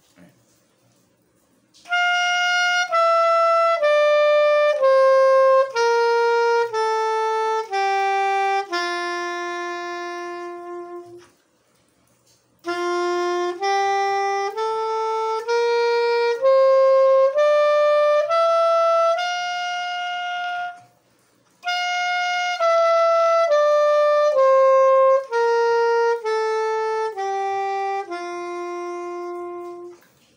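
Soprano saxophone playing the one-octave G major scale (Do = G, with F-sharp) slowly, about one note a second: down the octave, up again, then down once more, holding the last note of each run, with brief pauses between the runs.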